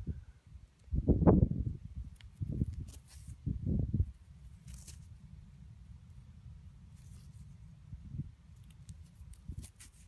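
Low rumble on the microphone, with three short louder bursts in the first four seconds, then a steady faint rumble.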